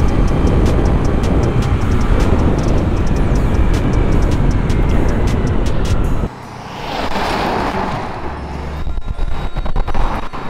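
Wind noise on the microphone and a Honda Navi scooter's small single-cylinder engine running at full speed on the road. About six seconds in the sound drops off suddenly, and then a car passing close by rises and fades.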